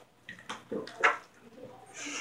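A few faint, short taps and knocks, about half a second apart, as plastic wrestling action figures are moved about on a toy ring's mat.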